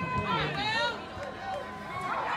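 Spectators talking and calling out around the field, with a rising call about half a second in; no single voice is clear enough to make out words.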